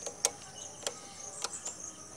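Royal Enfield Classic 350's turn-signal flasher ticking with the indicators switched on: three sharp ticks a little over half a second apart, with no engine running.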